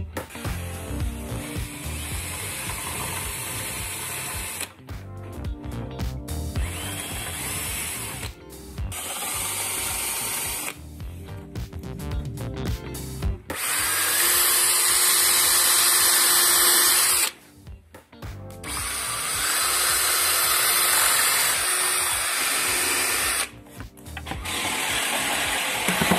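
Bosch cordless drill boring pilot holes for confirmat screws into pine boards, in several runs of a few seconds each that stop sharply, the two longest in the second half. Background music plays underneath.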